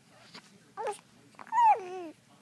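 A baby vocalizing: a short high coo just under a second in, then a louder, high squeal that slides down in pitch near the end.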